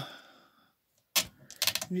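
A single sharp click from an Olympia SM9 manual typewriter being handled, a little over a second in.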